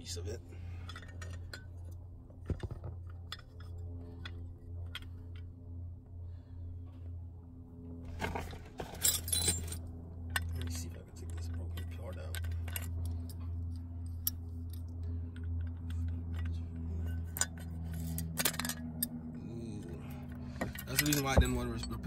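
Small metal parts clinking and rattling as a BMW steering lock housing is handled and worked with pliers. The clicks are scattered, with a louder cluster about eight to ten seconds in, over a steady low hum.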